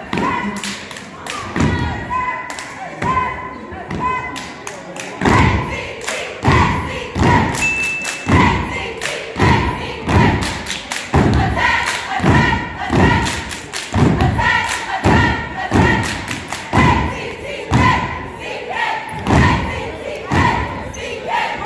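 Cheerleaders chanting a cheer in unison over a steady beat of stomps and claps, about three every two seconds, firmest from about five seconds in.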